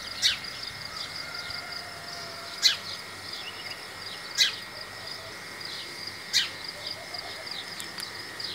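Small birds chirping repeatedly, with a few louder sharp calls about every two seconds over a faint steady high tone.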